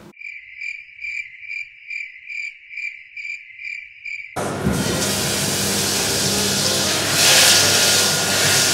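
A high-pitched chirping, evenly repeated about twice a second over dead silence, stops about four seconds in and is cut off by a loud, steady sizzle of butter and sugar frying in a hot pan.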